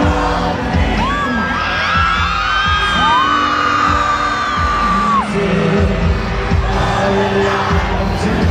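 Live rock band playing loudly in an arena, with drums and bass steady underneath. A singer holds a long note from about three seconds in until just after five, and fans scream and cheer along.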